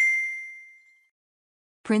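A single bright ding sound effect, one bell-like tone that rings out and fades over about a second.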